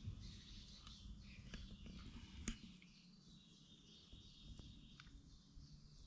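Near silence: faint outdoor ambience with a few soft clicks, one a little louder about two and a half seconds in.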